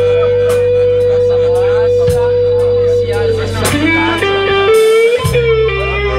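Live blues band with electric guitar: one long held guitar note for about three seconds, then a run of shorter bent notes, over steady held low notes.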